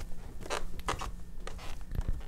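Footsteps climbing a wooden staircase, the treads creaking under each step, a few steps about half a second apart.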